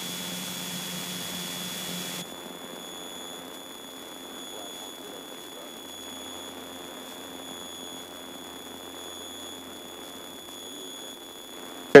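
Steady drone of a Piper Seminole twin-engine light aircraft heard from inside the cockpit, dropping a little in level about two seconds in.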